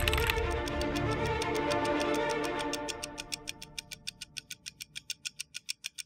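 Background music fading out under a steady ticking of about five clicks a second, which is left on its own near the end.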